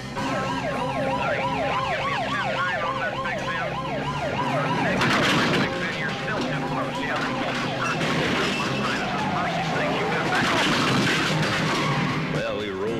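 Several police car sirens wailing over one another in fast rising-and-falling sweeps, over a low engine rumble. From about five seconds in the sound turns louder and noisier, with the sirens still going.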